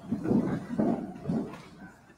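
A congregation sitting down: shuffling and low voices in a few irregular bursts.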